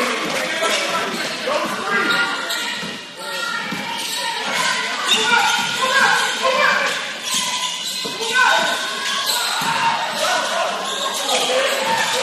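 Spectators talking and calling out in a gymnasium during play, many voices overlapping with echo, while a basketball bounces on the hardwood court.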